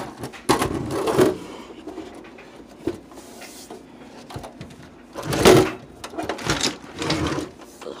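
Handling noise as a boxy stereo amplifier is turned over and shifted about on a wooden bench: several short bursts of scuffing and knocking, the loudest about five and a half seconds in.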